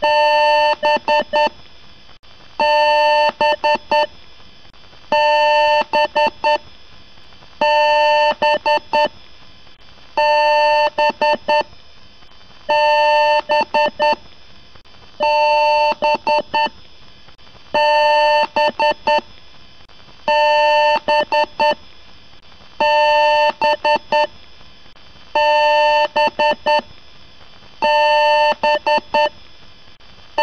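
Loud electronic beeping in a repeating pattern: a burst of short beeps about a second and a half long, coming back about every two and a half seconds.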